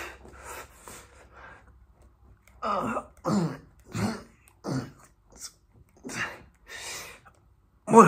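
A man grunting and exhaling hard with each push-up rep: short bursts that fall in pitch, about one every two-thirds of a second. They tail off about a second in, pause, then a second run starts near 3 s and fades out before the end.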